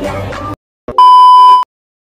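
Background music cuts off about half a second in. After a brief click, one loud, steady electronic beep sounds for just over half a second.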